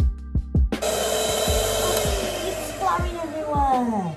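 Electric hand mixer switched on about a second in, whirring loudly as its beaters work buttercream in a plastic bowl, its whine sagging slightly in pitch as it runs.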